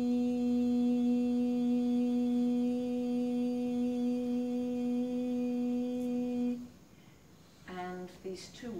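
A person humming one long steady note at a fixed pitch, which stops about two-thirds of the way in.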